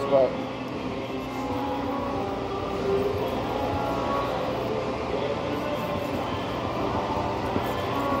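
A steel knife blade being stroked back and forth on an extra-fine whetstone to set the final edge, faint under a steady background din with sustained, music-like tones.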